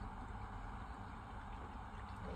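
Faint, steady trickle of water poured from a plastic bottle into a shower drain trap, a leak test of the new waste connection.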